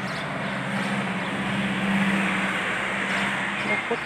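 A car driving past, its road noise swelling to a peak about halfway through and fading again, over a steady low hum.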